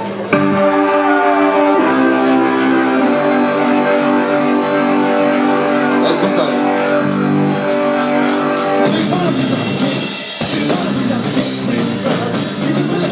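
Live rock band playing: an electric keyboard holds sustained chords over a drum kit, with cymbal crashes in the middle part. About nine seconds in, the held chords give way to busier playing after a brief drop.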